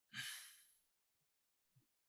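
A person's short sigh, a single breathy exhale of about half a second near the start, then near silence.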